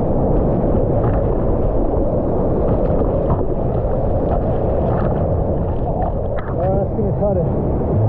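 Churning whitewater of a small breaking wave rushing past a GoPro held at the water's surface as a bodysurfer rides it in, a dull, steady rush. A man's voice calls out a few times near the end.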